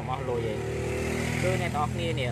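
A man talking over the steady low drone of a running vehicle engine.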